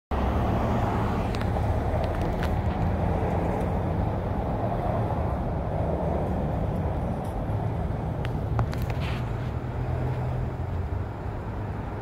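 Steady low rumble of vehicle engines and road traffic, with a few light clicks and taps.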